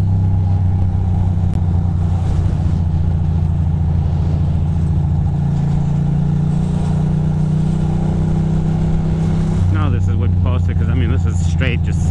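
2006 Ducati Monster 620's air-cooled L-twin engine running steadily at highway cruising speed. Its pitch shifts slightly about halfway through and again a couple of seconds before the end.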